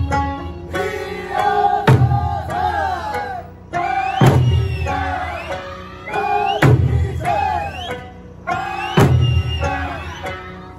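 Eisa drumming: large barrel drums struck together in a slow beat, one heavy stroke about every two and a half seconds, under a sung Okinawan folk song.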